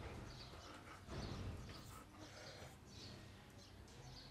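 Quiet outdoor background: small birds chirping in short repeated notes over a low, steady rumble.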